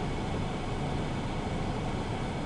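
Steady, even hiss with a low rumble: the background noise inside a stationary car's cabin.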